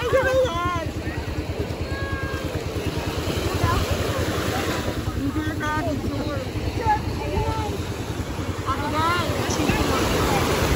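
A motorboat engine running steadily: a low, fast, even pulsing rumble that goes on throughout, with people talking over it at times.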